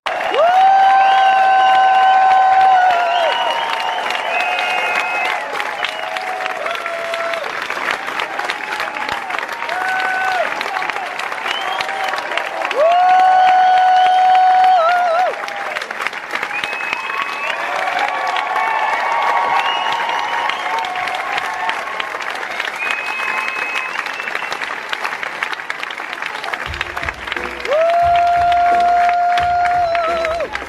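Theatre audience applauding throughout, over a musical's curtain-call music. Several long held notes come and go, each ending in a wavering vibrato.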